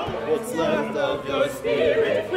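Opera chorus singing, several voices with vibrato overlapping in short phrases.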